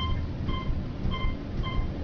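Otis gearless traction elevator car descending at high speed: a steady low rumble of the ride, with a short high beep repeating about twice a second.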